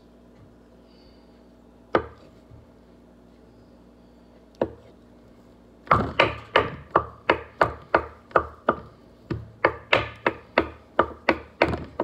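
Knife chopping hard-boiled eggs on a wooden cutting board: two single knocks in the quiet first half, then from about halfway in a steady run of sharp chops, about three a second.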